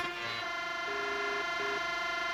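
Sustained electronic synthesizer chord held steadily, with a short higher note sounding twice in the middle.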